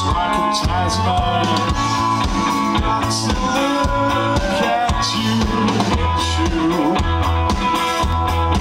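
Live rock band playing at full volume: electric guitars over bass and drum kit, with a recurring low bass pulse.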